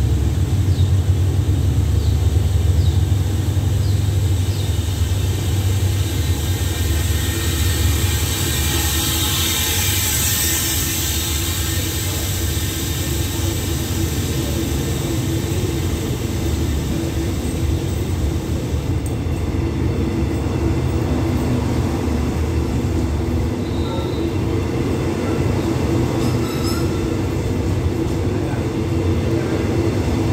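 A passenger train's coaches rolling slowly past the platform: a steady low rumble of wheels on rails, with a hiss swelling around the middle and a few faint short high squeals later on.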